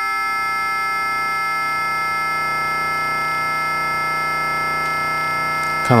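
Audio output of a Fonitronik MH31 VC modulator, a ring-modulator-style module, processing a pulse wave and a triangle wave, with a saw wave from a Make Noise DPO patched into its CV input. It holds a steady synthesizer tone with many fixed overtones.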